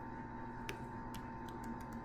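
A handful of faint, sparse clicks from computer keys and mouse buttons over a steady electrical hum.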